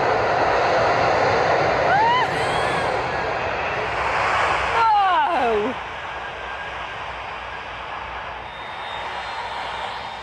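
Airbus Beluga cargo jet's turbofan engines running at takeoff power as it speeds down a wet runway and climbs away, a dense, loud rush of jet noise. The noise drops sharply about six seconds in and then carries on more faintly.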